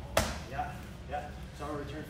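A switch kick to the body, thrown with a shin guard, landing with one sharp smack on a blocking arm and boxing gloves just after the start.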